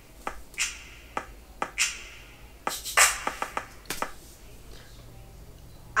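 Electronic drum sounds, finger snaps and snare-like hits, in an uneven drum-fill pattern: about a dozen sharp hits, bunched most thickly around three seconds in, stopping after about four seconds.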